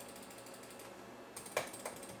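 Faint low hiss, then two sharp clicks close together near the end. They come from mouse-clicking that sends repeated nine-microstep moves to a small SparkFun stepper motor driven by an EasyDriver board.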